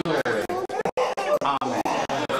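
Indistinct chatter of several voices talking at once. The sound cuts out completely for an instant about a second in.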